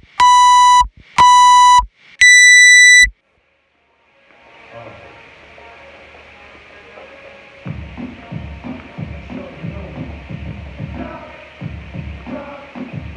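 Workout interval timer's start countdown: two even beeps about a second apart, then a longer, higher beep as the clock starts. After a short silence, music fades in, with a steady beat from a little past halfway.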